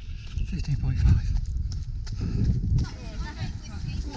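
A runner's footsteps and wind buffeting the camera's microphone, with faint, indistinct voices in the background.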